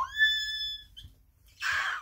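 A woman's high-pitched squeal of delight, held steady for about a second, then a short breathy exhale near the end.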